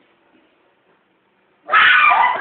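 Near silence, then a loud animal-like cry breaks in suddenly near the end, its pitch sliding.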